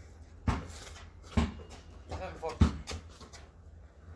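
A basketball bouncing hard on a concrete driveway: three loud bounces about a second apart, the third followed closely by a lighter one. A brief voice sounds between the second and third bounces.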